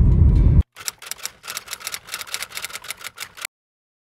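Road noise inside a moving Nissan NV200 van, a steady low rumble, cuts off abruptly about half a second in. It gives way to a quieter run of rapid, irregular dry clicks lasting about three seconds, then dead silence near the end.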